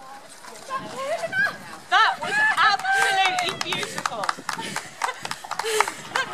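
People's voices with loud, high calls about two seconds in. A horse's hooves tap on the arena surface as it trots past, heard as quick irregular ticks over the second half.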